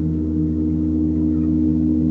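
Large gong ringing in a sustained low drone, its tones wavering in a quick, even pulse.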